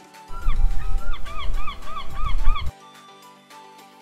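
A gull calling: a run of about nine short yelping calls, each rising then falling in pitch and coming faster toward the end, over wind rumble on the microphone. The outdoor sound cuts in just after the start and stops abruptly about two and a half seconds in.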